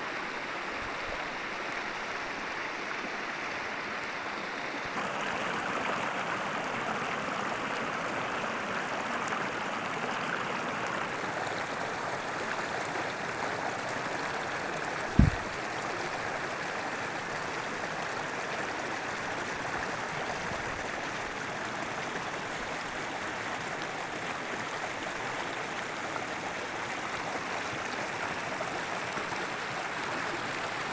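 Small mountain stream swollen with snowmelt, running steadily with an even rushing sound. A single short, low thump about halfway through.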